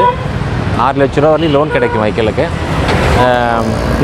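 Road traffic passing on a busy street, a steady low rumble of engines and tyres under a man talking.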